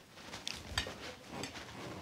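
Quiet room tone with a few faint, scattered clinks of dishes and cutlery at a dinner table.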